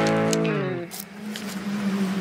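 Music: a sustained guitar chord rings on after the full band stops, then slides down in pitch about half a second in and leaves one low note held.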